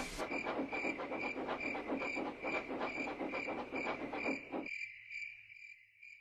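Crickets chirping in a steady, even rhythm of about two chirps a second, fading out about four and a half seconds in.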